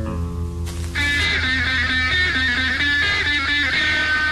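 Indie rock band playing, led by guitars over bass. About a second in, a brighter and louder electric guitar line comes in.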